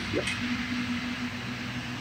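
A steady, even mechanical hum with background noise, after a brief spoken 'yeah' at the very start.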